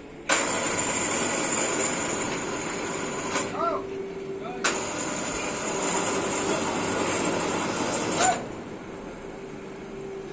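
Gantry crane's electric motors running as the crane moves a stack of concrete railway sleepers, a steady noise with a high whine. It starts sharply just after the start, eases briefly around the middle, and stops near the end with a short knock.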